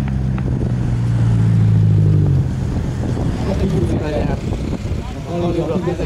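Engines of two drag-racing cars running down the strip, heard as a steady low drone that cuts off suddenly about two and a half seconds in.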